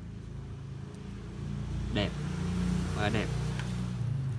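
A motor vehicle's engine running steadily as a low hum, growing louder about halfway through.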